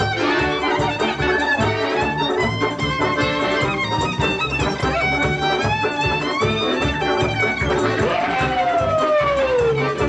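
Klezmer band playing: violin leading over accordion, double bass and drums, with a steady low beat. Near the end the melody falls in one long downward slide.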